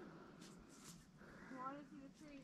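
Near silence outdoors, with a faint distant voice briefly near the end.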